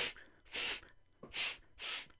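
A man puffing out short, forceful breaths, about four in quick succession, in imitation of someone exhaling hard at a bad smell.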